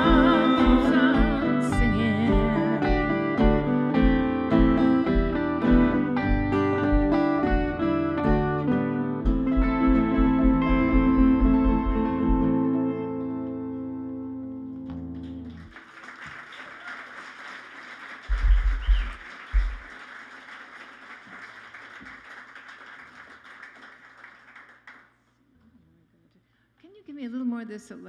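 Acoustic and electric guitars playing the close of a folk song over a steady low beat, the last chord ringing out and fading about 13 seconds in. Then audience applause for several seconds, with a couple of dull thumps in the middle.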